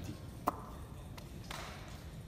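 Whiteboard markers being handled: a sharp click with a short ring about half a second in, a fainter click a little later, and a brief scuffing noise near the end.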